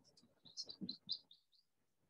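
A songbird gives a quick run of about eight faint, high chirps lasting about a second.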